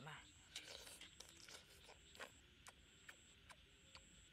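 Quiet, wet crunching and slurping of a person biting and chewing juicy raw watermelon flesh, a run of short crunches about every half second.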